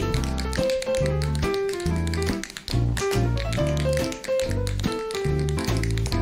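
Two dancers tapping their shoes on a hard stage floor: quick, sharp clicks in rhythm over a live band playing an upbeat instrumental break with a stepping bass line.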